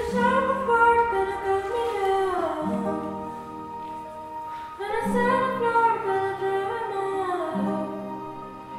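Music with young female singing voices holding wavering notes over low sustained accompaniment notes that change about every two and a half seconds.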